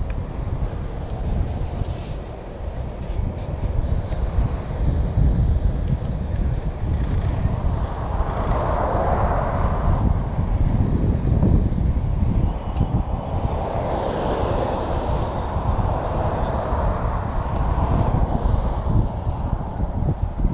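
Wind buffeting the microphone of a camera on a moving bicycle, with cars passing on the highway beside the bike path; their tyre and engine noise swells and fades about halfway through and again a few seconds later.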